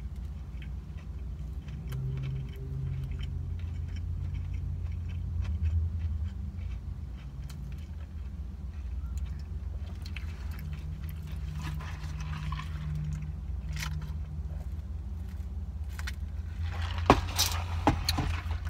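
Close-up chewing of a mouthful of fried chicken sandwich, slow and mostly soft, with small mouth clicks and a few sharper clicks near the end, over a steady low rumble inside the car cabin.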